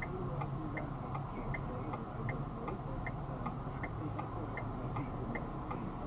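A car's indicator flasher ticking steadily, about two to three clicks a second with alternating louder and softer clicks, over a low steady hum inside the stopped vehicle's cabin.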